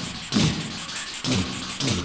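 Beatbox-style percussion from the song's backing: three sharp hits, each with a low falling boom, unevenly spaced about half a second to a second apart.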